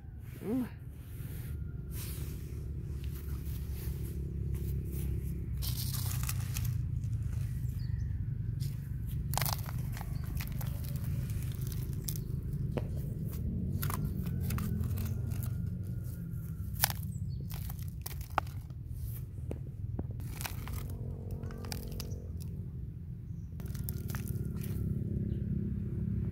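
Plastic toy shovel scraping up gravel and tipping stones into the plastic bed of a toy dump truck: scattered crunches and sharp clicks of stones over a steady low rumble.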